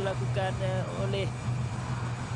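Sound of the televised football match: a commentator's voice, quieter than the surrounding talk, in short phrases over a steady low hum of stadium background noise.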